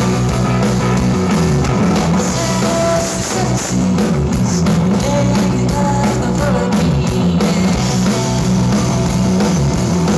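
Live rock band playing loudly: electric guitars over a drum kit, dense and continuous.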